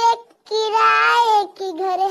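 A high-pitched voice singing long held notes, with a short break about a quarter of a second in.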